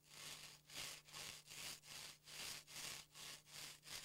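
Gloved hands rubbing back and forth along a wooden qamutiik dog-sled board, a rhythmic scraping of about two to three strokes a second.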